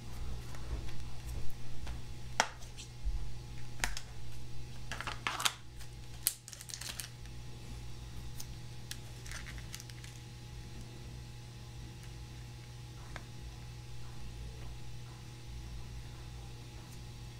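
Small tools and watch parts handled on a bench: scattered sharp clicks and brief rustles, thickest in the first seven seconds, then thinning out, over a steady low hum.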